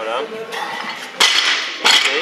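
An Olympic barbell loaded with bumper plates, about 80 kg, dropped onto the lifting platform after a snatch: a loud clank about a second in, followed by the metallic rattle of the plates and collars settling, and a second clank near the end. A short shout is heard at the very start.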